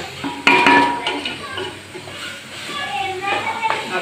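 A wooden spatula stirring thick masala in an aluminium cooking pot, knocking against the pot with one loud ringing clank about half a second in, then softer scrapes and taps.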